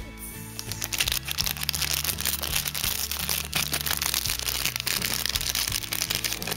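Clear plastic packaging crinkling and crackling as it is handled, a dense run of small crackles that starts about half a second in, over background music.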